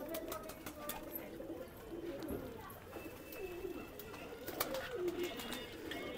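Domestic pigeons cooing in a loft, low wavering coos one after another, with a few faint clicks among them.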